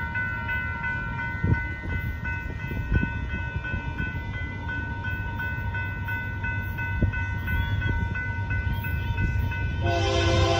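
Railroad grade-crossing warning bell ringing steadily and evenly, over a low rumble as the freight train approaches, with a few brief low thumps.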